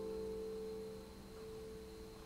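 The last chord on a Casio electronic keyboard with a piano tone, held and slowly dying away; only its low notes are still ringing.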